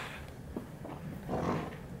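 A low, rumbling fart that comes in a couple of swells: gas from a stomach upset after eating sugar-free licorice.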